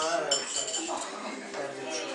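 Tableware clinking at a set table: one clink about a third of a second in rings on for about half a second, among softer knocks of dishes.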